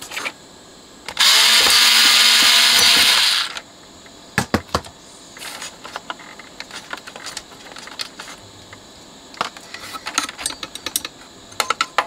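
Electric screwdriver running for about two seconds, starting a little over a second in, as it drives out a screw; then scattered small clicks and taps of the screw and metal parts being handled.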